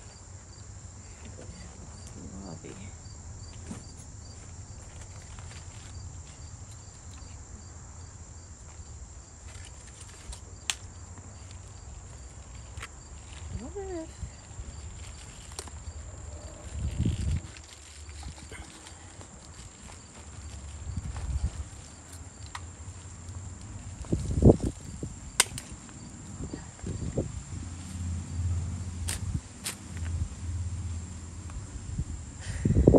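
Hand pruning shears snipping kohlrabi leaves and stems, with rustling and handling thumps from the leaves, the loudest a little past the middle and near the end. A steady high insect drone runs underneath.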